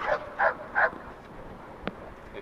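A yellow Labrador-type search dog barking three times in quick succession in the first second. A single sharp click comes near the end.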